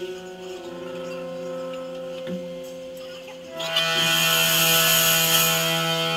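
A punk band playing live: amplified guitar notes held and ringing, then about three and a half seconds in a louder, harsher sustained chord comes in with a hiss of cymbals.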